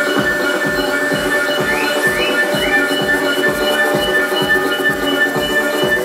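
Electronic dance music from a live DJ set: a steady kick drum about two beats a second under held high synth tones, with three short rising synth chirps about two seconds in.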